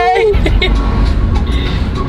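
Steady low road and engine rumble inside a moving car's cabin. A held sung note with vibrato cuts off just after the start.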